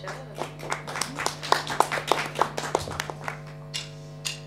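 Scattered hand clapping from a small audience, a couple of dozen irregular claps that thin out toward the end, over a steady low electrical hum.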